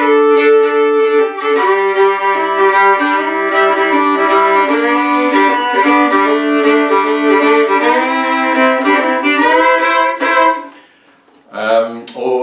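Fiddle playing two-note double stops with shuffle bowing, moving from chord to chord. The playing stops about ten and a half seconds in.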